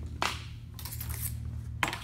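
A sheet of metal being turned around on a workbench: two sharp metallic clicks about a second and a half apart, the second the louder, with a brief scraping rush between them, over a steady low hum.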